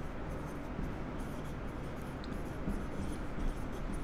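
Marker pen writing on a whiteboard: faint rubbing strokes as letters are written.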